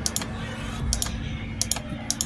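Computer mouse clicking a few times, the sharp clicks coming in quick pairs, over a faint steady hum.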